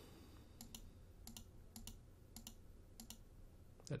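Faint computer mouse button clicks, about five, each a quick press-and-release pair, spaced roughly half a second apart.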